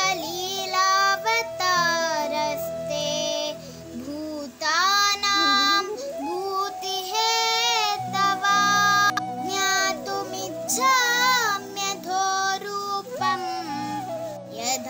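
A child singing a Sanskrit devotional shloka in long, ornamented notes that bend and glide in pitch, with short breaths between phrases, over steady sustained accompanying notes.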